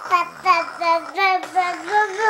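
LeapFrog musical activity table playing a song: a child-like voice sings a short melody of steady, even notes, several a second.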